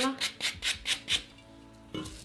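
Super-fine sanding pad rubbed in quick strokes over a glazed, chalk-painted urn, about four scratchy strokes a second, stopping after a little over a second. It is lightly sanding back the glaze to bring out the lighter paint beneath.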